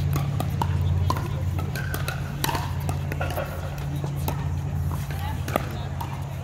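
Paddles striking a plastic pickleball in a rally: a series of sharp, hollow pocks at uneven intervals. Voices and a steady low hum run underneath.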